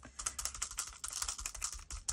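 A makeup sponge dabbing paint through a plastic stencil onto crinkly brown kraft packing paper, making a quick run of light taps.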